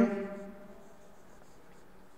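Faint strokes of a marker pen writing on a whiteboard, after the drawn-out end of a spoken word fades in the first half second.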